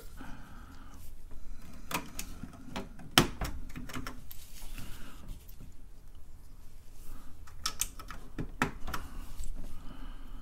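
Keys being pressed one at a time on a TRS-80 Model 4 keyboard, some of the switches bare of their keycaps: irregular, separate clicks with pauses between them, the loudest about three seconds in.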